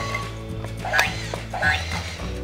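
Electronic tune from a Smily Play remote-control walking dinosaur toy as it moves, with sharp plastic clicks and knocks from its walking mechanism.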